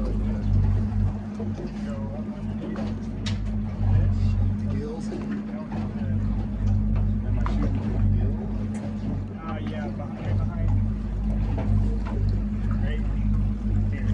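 Boat engine idling steadily with a low hum, with scattered short knocks and clatter.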